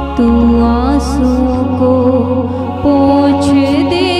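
Hindi Christian worship song: slow, held sung notes that bend and slide, over sustained instrumental chords with a low bass note that changes about one and a half seconds in.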